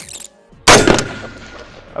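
A single rifle shot from a civilian Daewoo K1 5.56 mm carbine, about two-thirds of a second in, with a short echo trailing off over the next second.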